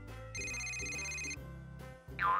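A phone's electronic alert tone, steady and high, lasting about a second over soft background music.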